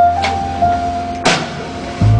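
A live jazz band playing a slow instrumental intro: a held melody note over a low bass note that stops shortly after the start, with two sharp drum hits, the louder one just past a second in.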